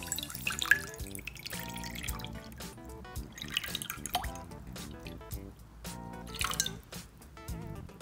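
Water poured from a glass jug into a wide glass dish, splashing and dripping, with background music playing throughout.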